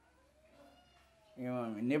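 A faint, drawn-out call rises and then falls in pitch for about a second during a pause in a man's speech. His speech comes back, louder, about one and a half seconds in.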